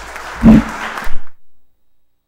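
Audience applause starting up, with a loud low bump on the desk microphone about half a second in. The sound cuts off abruptly after about a second and a half, leaving silence.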